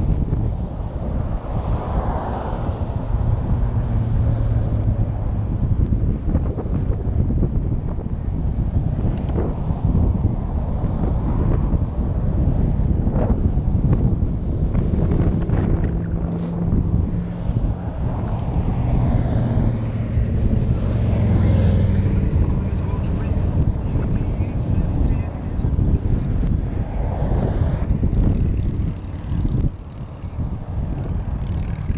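Wind rushing over the microphone of a moving bicycle, with cars passing on the highway alongside; the traffic rises and fades several times.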